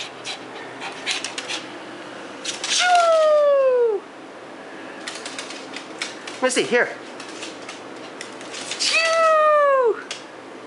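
Shih Tzu whining to be given a biscuit: two long whines that slide down in pitch, each about a second long, about three seconds in and again near the end, with a short wavering whimper between them. Scattered light clicks fill the gaps.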